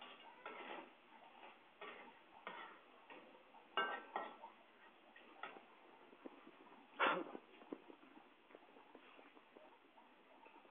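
Irregular clicks, knocks and rustles of a recording device being handled or moving against cloth, about one every second or so, with the loudest knock about seven seconds in.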